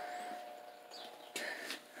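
Quiet room tone with a faint steady hum that fades early on. About a second and a half in comes one short, soft rustle-like noise.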